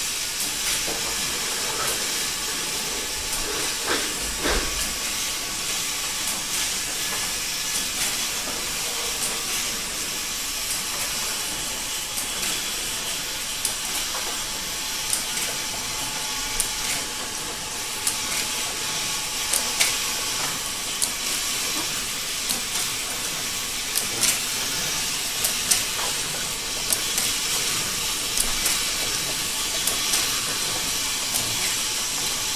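Syrup bottle filling and capping machine running: a steady hiss with frequent short, sharp clicks and clacks from its moving parts, which come more often in the second half.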